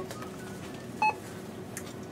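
Supermarket self-checkout giving a single short electronic beep about a second in, over a low steady store background.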